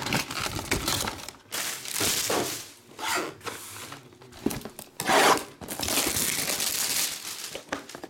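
Plastic shrink wrap being torn and crinkled off a trading-card box, in several uneven bursts of ripping and rustling.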